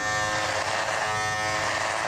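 A Braun electric foil shaver running with a steady buzz as it is pushed up through long, weeks-old stubble on a cheek, using its stubble bar. The stubble is really too long for an electric, and onlookers say it sounds painful.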